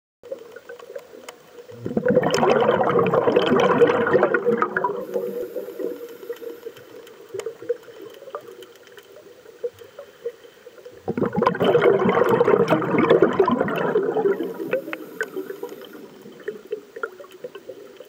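Scuba diver's exhaled bubbles from a regulator, heard through the camera's underwater housing: two gurgling bursts of about three seconds each, some nine seconds apart, with faint clicks between breaths.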